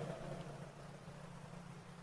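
Faint steady low hum with a soft hiss: the background noise of a speech recording.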